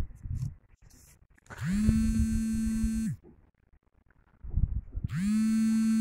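A steady buzzing tone held at one pitch for about a second and a half, sounding twice, each time starting with a quick upward slide. There are a few soft handling knocks as well.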